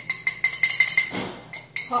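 Metal spoon stirring quickly in a metal frying pan on the stove: a rapid run of clinks and scrapes with a faint, steady ringing tone from the metal.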